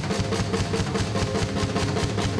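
Live drum kit played in a fast, dense run of strokes across the drums and bass drum, as a drum solo.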